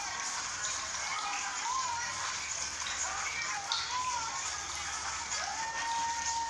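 Background music with a sung melody, including one long held note near the end, over a steady hiss.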